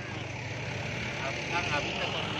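A steady low engine hum, like traffic or an idling motor, with faint voices in the background.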